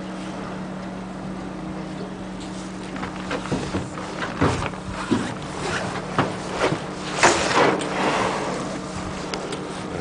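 Small boat's motor idling with a steady low hum. Scattered knocks come in the middle, and a louder rushing whoosh about seven seconds in.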